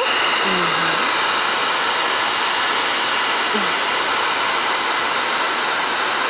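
Handheld hair dryer running steadily, a constant rush of air with a faint whine, blowing hot air onto wax crayons to melt them down a sheet of paper.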